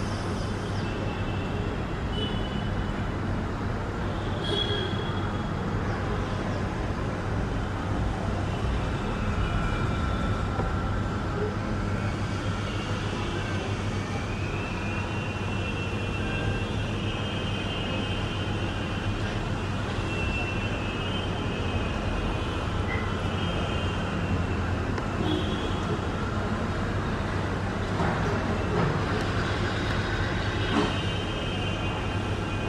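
Steady low background rumble with a constant hum, and faint, high bird chirps over it. The chirps come most often from about twelve to twenty-two seconds in.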